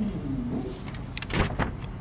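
Sheets of printed paper rustling as they are leafed through, a few quick rasping strokes about halfway in.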